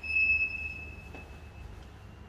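A single bright, high ding that rings out sharply and fades away over about a second and a half, with a faint click about a second in.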